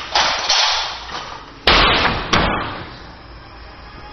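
A series of sharp bangs and knocks, each dying away with a short ring; the two loudest come about two-thirds of a second apart, a little before the middle.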